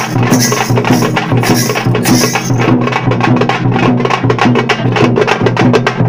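Thappattam parai frame drums beaten with sticks in a fast, driving rhythm, with a larger drum sounding a repeating low beat under the quick strokes. A bright high layer fades out about halfway through while the drumming carries on.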